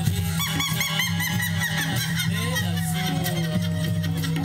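Folk dance music: a steady low drone under a high, quickly warbling melody line with rapid repeated turns in pitch.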